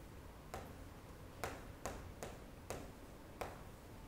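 Chalk tapping and clicking against a chalkboard as a short expression is written, about six faint, sharp clicks at irregular intervals.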